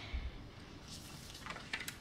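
Faint handling sounds as a paper trimmer is set aside: a soft low thump just after the start, then a few light clicks near the end.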